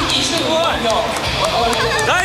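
Excited voices shouting and whooping, with hand claps.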